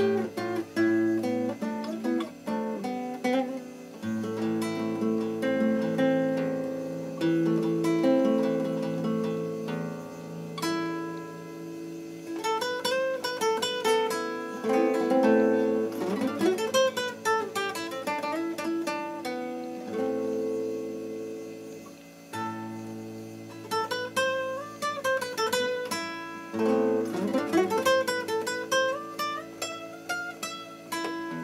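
Solo nylon-string classical guitar played fingerstyle: a melody of plucked notes over held bass notes, with quick runs of notes rising and falling in pitch in the middle and again near the end.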